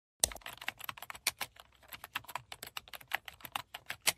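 Computer keyboard typing: a rapid, uneven run of key clicks, starting just after the beginning, as a web address is typed in.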